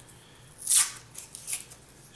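Paper coin wrapper crinkling as it is folded around a roll of half dollars: one sharp crackle a little under a second in, then a fainter rustle.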